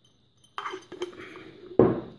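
A glass jar clinking as it is handled, ending in a louder knock near the end as it comes down on the wooden tabletop.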